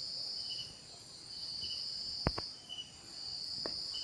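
Insects chirping steadily in the background: a high buzz that swells and fades about once a second. Two soft clicks come a little past halfway and near the end.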